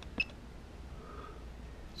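A key press on a Kexin three-axis DRO keypad: one short click with a brief high beep just after the start, then only a faint low steady hum.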